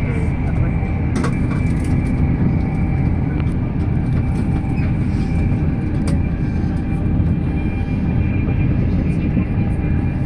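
Inside a Mark 4 coach of an InterCity 225 train running at speed on electrified main line: a steady low rumble of wheels on rail, with a thin steady high whine over it and a few faint clicks.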